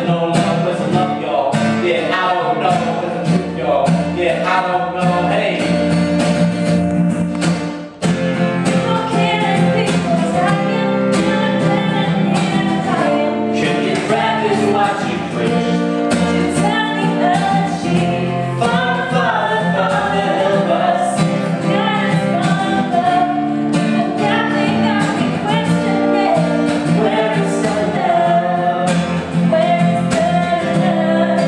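A steel-string acoustic guitar strummed in a steady rhythm, with a man and a woman singing over it, sometimes together. There is a brief break in the sound about eight seconds in.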